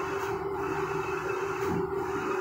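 A steady background hum with a constant low-mid tone.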